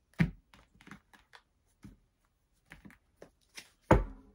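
A tarot deck being cut into piles and stacked back together by hand on a cloth-covered table: a scattered series of soft card taps and knocks. The loudest knock comes near the end.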